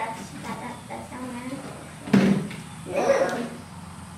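Children's voices: short vocal sounds and murmurs, the loudest about two seconds in and another about three seconds in.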